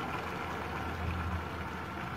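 Steady low hum with a soft even hiss while coconut milk is poured into a pot of simmering rice porridge on a gas stove; no sharp splashes or knocks.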